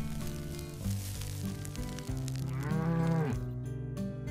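A single cattle moo, its pitch rising and then falling, about two and a half seconds in, over steady background music.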